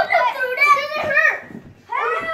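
Children's high-pitched voices calling out, with no clear words, for about the first second and a half.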